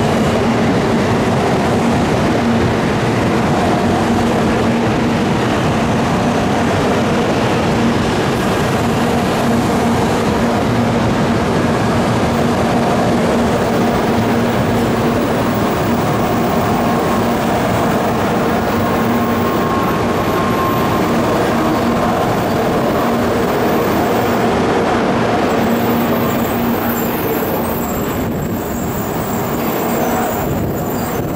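N700 series Shinkansen train rolling past as it enters the station: a steady, loud rumble of wheels and running gear with a faint hum. It eases off over the last few seconds as the end car goes by.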